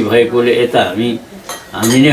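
Dishes and cutlery clinking on a table laden with plates and mugs, under a man's talking voice.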